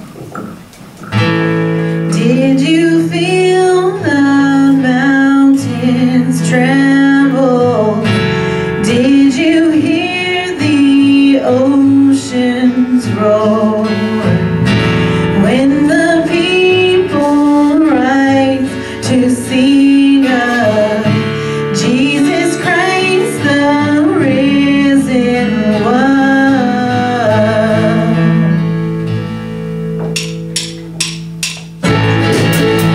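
Live worship band playing an upbeat song on acoustic guitar and ukulele, with voices singing the melody; the music starts about a second in.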